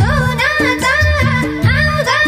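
Nepali lok dohori folk song: a woman singing a melismatic melody over folk instrumental accompaniment with a steady beat.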